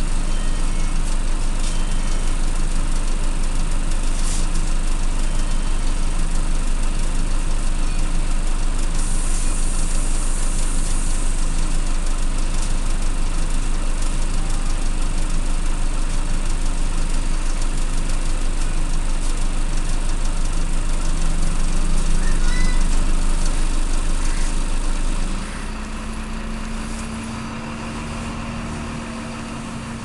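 Irisbus Citelis Line city bus's diesel engine idling steadily, heard from inside the passenger cabin. About 25 seconds in the engine note drops suddenly and changes pitch as the bus moves off.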